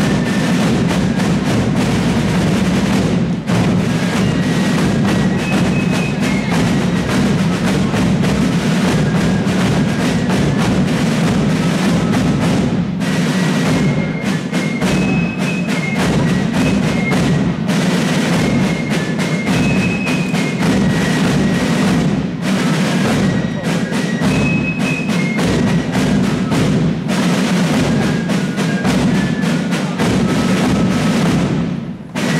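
Ancient-style fife and drum corps playing: fifes carry a high melody over continuous rapid snare drumming on rope-tension field drums, with bass drum beneath.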